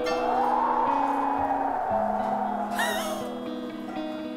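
Light background music with sustained notes, over a hollow wind-whoosh sound effect that swells and fades out over about three seconds, marking an empty room as 'desolate'. A brief high warbling glide comes about three seconds in.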